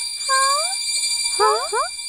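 Cartoon magic sound effect for glowing chest medallions: a steady high shimmering ring with twinkling sparkles, and a few short tones that sweep upward.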